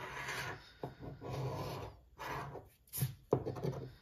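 A coin-style scratcher rasping across the coating of a scratch-off lottery ticket on a wooden table, in a series of short strokes with brief pauses between them.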